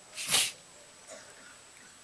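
A man's single short, sharp breath close to the microphone, lasting about a third of a second, shortly after the start.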